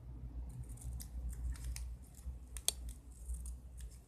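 Small scissors snipping the loose ends of a ribbon rose: several quick, sharp snips, the loudest about two-thirds of the way through, over a low steady hum.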